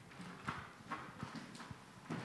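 Faint footsteps of a person walking briskly on a hard floor, about two to three steps a second.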